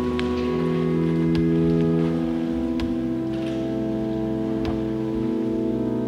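Organ playing slow chords, each held for a second or two before moving to the next.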